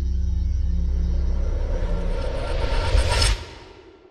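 Logo-intro sting: a low droning music bed with held tones under a rising swell that builds to a sharp hit about three seconds in, then drops off suddenly and fades away.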